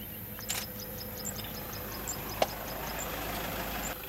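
Game-drive vehicle's engine idling steadily as a low hum, with one sharp click a little past halfway.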